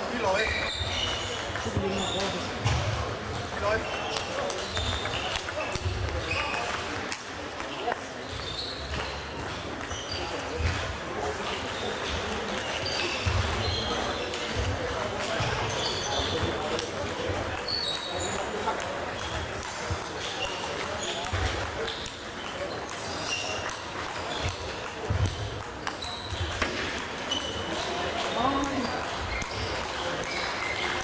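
Table tennis rallies in a sports hall: the ball clicking sharply off the bats and table again and again, with short high shoe squeaks and low thumps of footwork on the hall floor. Indistinct chatter and play from other tables carry through the hall.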